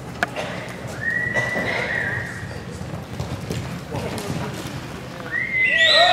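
A horse whinnying: a short high call about a second in, then a loud, long wavering whinny starting about five seconds in.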